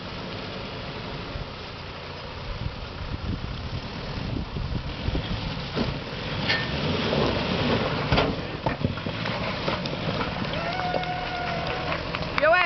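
A 4x4 SUV driving through a shallow muddy pool and climbing out onto a rock ledge. Its engine runs under load with water splashing at the wheels, in a steady rumble that grows louder in the middle, with a few sharp knocks.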